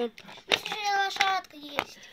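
A child's high voice, drawn out for just under a second, not put into words. Sharp clicks as it starts and again near the end, from the small plastic doll-house furniture being handled.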